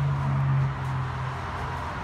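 A steady low hum, with a stronger droning tone over it that fades out about a second and a half in.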